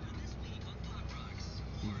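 Steady low hum under an even background noise, with no distinct event.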